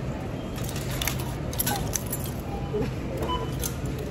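Plastic drink bottles and a bag of ice being handled at a self-checkout: a run of light clicks and rattles over a steady low hum.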